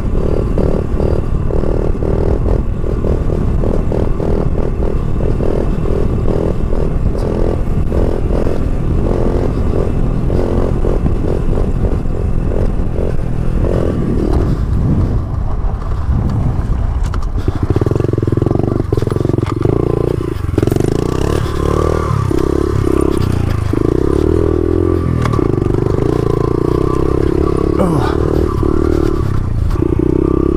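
Honda CRF70 pit bike's small single-cylinder four-stroke engine running as the bike is ridden over a dirt road, with some rattling clatter. The engine note drops briefly a little past halfway, then runs stronger and steadier from there on.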